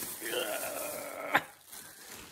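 A person's voice holding one drawn-out wordless sound for about a second, followed by a sharp click.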